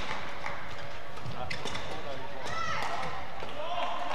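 Badminton play on an indoor court: a sharp hit on the shuttlecock right at the start, then lighter knocks and short high squeaks, over steady hall noise.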